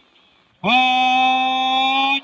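A man chanting a ritual call, holding one long steady note that starts about half a second in.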